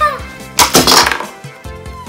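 LOL Surprise Confetti Pop plastic ball popping open about half a second in, a loud, sudden burst of noise lasting about half a second as the confetti scatters over the table. Background music plays under it.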